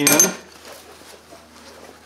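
A steel bushing clinks against the steel of the blade's angle-pivot pin hole as it goes in: one short metallic clink with a brief high ring at the start, then faint handling.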